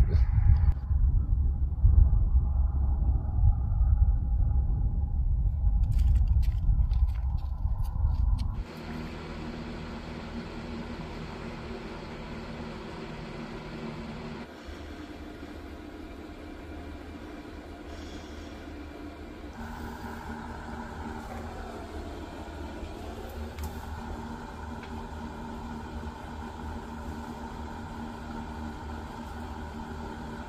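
Strong wind rumbling on the microphone outdoors, low and gusty. It stops abruptly about a third of the way in, leaving a much quieter steady hum for the rest.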